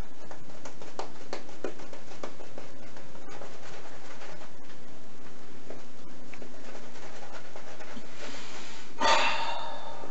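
Shaving brush working soap lather on a bearded face: a steady wet swishing flecked with fine crackles.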